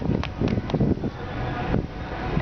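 Wind buffeting the microphone as a steady low rumble, with a few sharp knocks in the first second.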